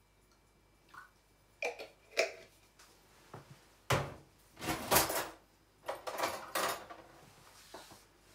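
Kitchen handling sounds: a few light taps, then a sharp knock about four seconds in, followed by short clatters and rustles of items being moved, as a bottle of Worcestershire sauce is fetched from storage.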